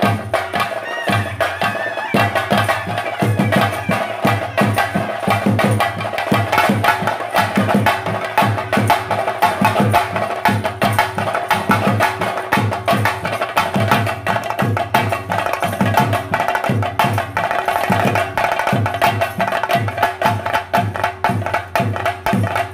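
Fast, continuous chenda drumming accompanying a theyyam dance, dense strokes with a steady ringing tone running above them.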